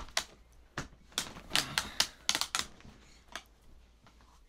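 A quick, uneven run of sharp clicks and taps, about a dozen over three seconds and thickest in the middle, with one last tap near the end.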